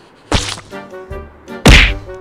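Two loud, sudden thumps, the second louder and near the end, over background music with regular notes.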